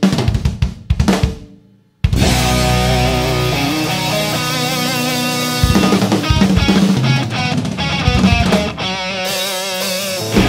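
Rock band recording. A few drum-kit hits die away over the first two seconds and drop to a brief silence. Then dense, sustained electric-guitar chords start suddenly, with wavering notes over them.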